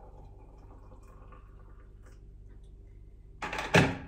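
Hot water poured from an electric kettle into a teacup, a faint steady trickle. Near the end comes a sudden loud clunk.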